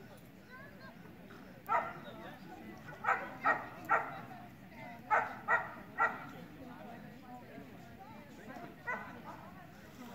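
A dog barking in short, sharp barks: one, then two quick runs of three, then a single bark near the end.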